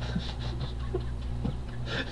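A man's stifled, breathy laughter, over a steady low hum.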